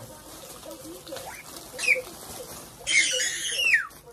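Plastic shopping bag and product packaging rustling and crinkling as items are handled, loudest in a burst of under a second about three seconds in.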